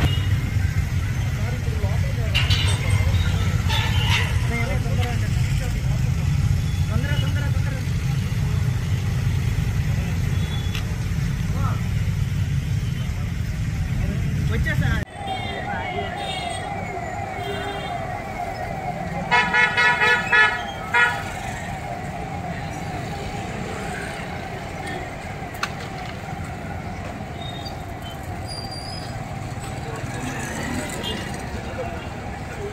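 Vehicle engines running with a steady low rumble. After an abrupt cut, street traffic sound takes over, with several short vehicle horn blasts about two-thirds of the way through.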